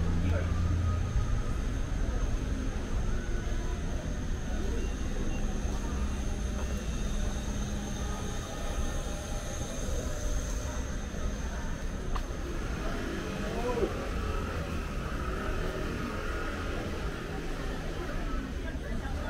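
City street ambience: a steady low rumble of traffic or machinery, heavier in the first second, with a faint high steady whine and occasional distant voices.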